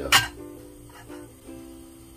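A sharp clink just after the start, as a metal lid is set onto an earthenware pot, followed by quiet background music on a plucked string instrument, a few notes changing about every half second.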